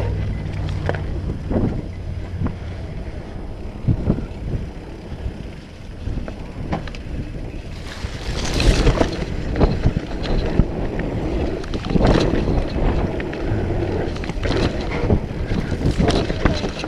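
Mountain bike riding down a rocky dirt trail: tyres rolling over dirt and rock, with knocks and rattles from the bike over bumps and wind buffeting the microphone. About eight seconds in, a louder rough hiss.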